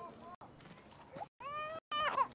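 Short, chopped fragments of pitched vocal sounds with bending pitch, broken by abrupt cuts to silence. A longer call comes about one and a half seconds in.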